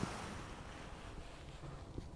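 A long, soft breath out that fades away, as the patient is held in position just before a chiropractic back adjustment.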